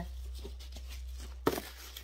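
Parcel packaging being handled: faint rustling, with one sharp crackle about one and a half seconds in.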